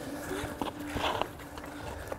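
A small child's hockey skates stepping and scraping on outdoor ice in a few short, uneven steps, the loudest about a second in. A steady low tone runs underneath.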